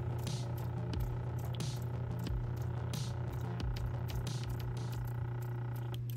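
Lapidary cabbing machine's motor running with a steady low hum, its 220-grit wheel spinning.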